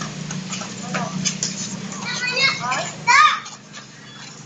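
Small children's high-pitched voices calling out as they play, ending in a loud shout just after three seconds in. A steady low hum runs underneath and stops at about the same time, with a few light clicks earlier.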